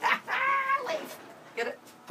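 A man's high-pitched, drawn-out vocal sound, like a squeal, for most of the first second, then a short vocal sound near the end.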